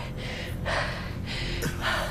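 A person gasping and breathing hard, several breaths in a row, over a low steady hum.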